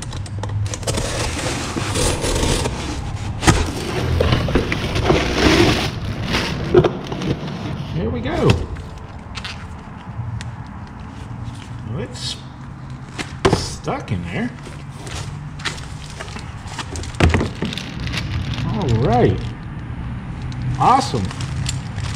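Cardboard shipping box being torn open and handled, with dense rustling and tearing through the first several seconds, then scattered knocks and crinkling of a plastic bag as a bundle of plastic-wrapped pushrods is lifted out.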